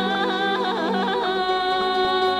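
Bulgarian folk song: a woman sings an ornamented, wavering melody over steady held notes from a folk band. Her melody stops about a second and a half in while the instruments hold on.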